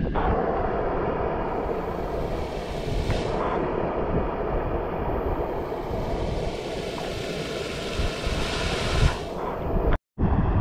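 Rushing water and heavy rain: runoff gushing from a concrete drain outlet into a swollen, muddy stream. It makes a steady rushing noise with an uneven low rumble beneath.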